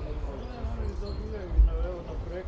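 Players' voices calling and talking across an open football pitch, heard from afar. Low rumbling thuds lie under them, with the loudest thump about one and a half seconds in.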